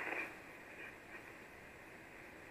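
Faint steady hiss of 75-metre band noise from an Icom IC-706MKIIG's receiver in the gap between SSB transmissions; the tail of a voice fades out just after the start.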